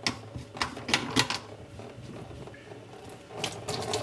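Slip-joint nuts on a plastic sink P-trap being unscrewed by hand: a few sharp plastic clicks and knocks, bunched about a second in and again near the end.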